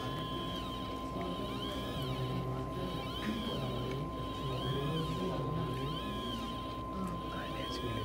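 Stepper motors of a Dobot desktop robot arm whining in repeated rising-and-falling glides, about one a second, as the arm moves its marker in strokes to draw barcode lines, over a steady high-pitched hum.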